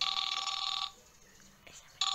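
A telephone ringtone ringing: one ring of just under a second, a pause, and the next ring starting near the end.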